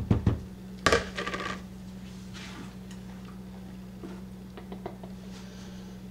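Mixing bowl handled and set down on a kitchen counter: a few light knocks, then one loud clunk about a second in that rings briefly, and a few faint clicks later.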